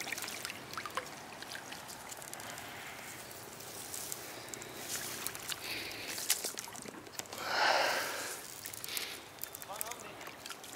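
Landing net being handled at the water's edge: faint rustling and small knocks, with a louder swish lasting about a second some seven and a half seconds in.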